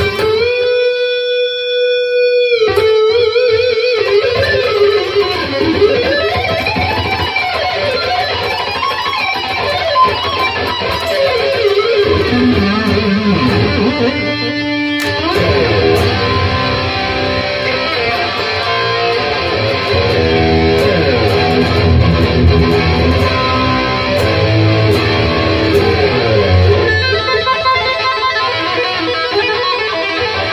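EVH Wolfgang Standard electric guitar played through a HeadRush amp-modelling pedalboard with tape echo, playing a sustained rock lead. It holds one long note with a slight vibrato for the first couple of seconds, then moves into fast runs and bends.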